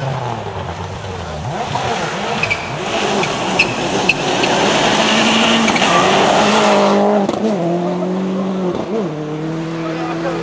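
Rally car passing close on a loose-surface forest stage: engine revving hard, with tyre noise on the dirt growing to its loudest about five to seven seconds in. The engine note then steps down in pitch as the car moves away.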